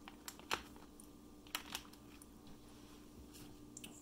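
Metal fork clicking and scraping against a plastic vacuum-seal bag while picking a flake of smoked trout, with a few light clicks and crinkles, the loudest about half a second in.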